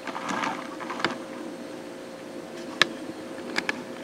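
Quiet room tone with a steady faint hum, broken by a few small clicks and taps, about one a second, a few of them close together near the end.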